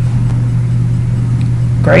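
A steady low hum with a faint hiss over it, unchanging throughout; a woman's voice begins right at the end.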